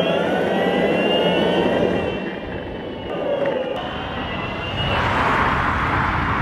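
Electric skateboard rolling over asphalt: the motor's whine slowly drops in pitch over the wheels' rumble, with wind on the microphone. A brighter hiss rises near the end.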